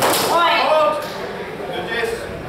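A sharp strike of a steel longsword landing as the fencers meet, followed at once by a loud shouted call lasting about half a second.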